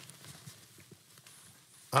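A pause between spoken phrases: faint room tone with a few soft, short clicks.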